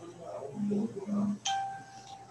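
A single steady electronic tone, like a chime or notification beep, sounds about one and a half seconds in and holds for under a second. Quiet speech comes before it.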